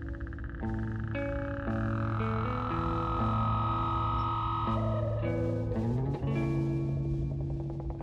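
A synthesizer plays held chords that change every second or so over a steady low bass note, with no drums. A fast-pulsing, croak-like high tone opens the passage, and a gliding tone bends in about five to six seconds in.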